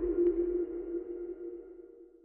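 Closing logo sting: a held electronic tone of two close pitches, with a faint click near the start, fading out through the second half.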